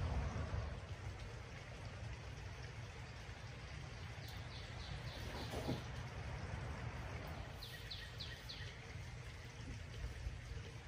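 Quiet outdoor background with a steady low rumble, broken twice by a small bird's short run of four or five quick, high, falling chirps, about four seconds in and again about eight seconds in.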